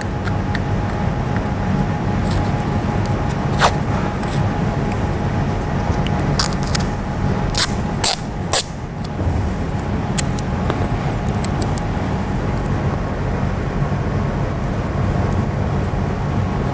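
Steady low background rumble with a scattering of short, sharp clicks and crackles from strips of athletic tape being handled, torn and pressed onto a finger. The clicks cluster about six to nine seconds in.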